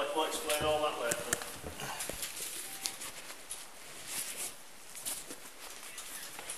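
A man's voice briefly at the start, then faint rustling with a few sharp clicks.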